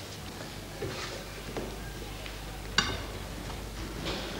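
A kitchen knife cutting into a mooncake on a china plate, the blade giving one sharp click against the plate about three seconds in, over a steady low hum and hiss.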